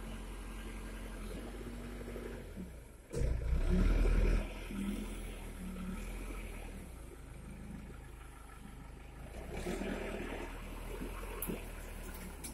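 Backhoe loader's diesel engine running as the machine works through brush, with a louder low surge about three seconds in that lasts a second or so.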